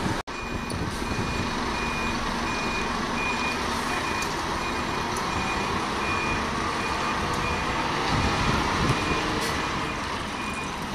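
Reversing alarm on a bus beeping steadily, one pitch about every three quarters of a second, over a diesel bus engine running. There is a brief dropout in the sound a quarter of a second in.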